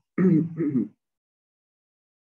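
A man clearing his throat: a voiced rasp in two short pushes within the first second.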